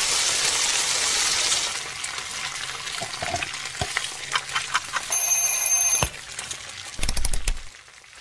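Food sizzling in a frying pan, loudest in the first couple of seconds and thinning to scattered crackles. Then a small twin-bell alarm clock rings steadily for about a second, about five seconds in, followed by a few low knocks.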